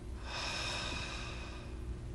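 A person slowly and audibly breathing out close to the microphone: one long, soft exhale lasting about a second and a half, a deliberate calming breath.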